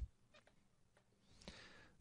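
Near silence: room tone, with a faint tick and, about a second and a half in, a faint short sound.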